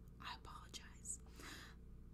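A woman whispering faintly under her breath in a few short phrases.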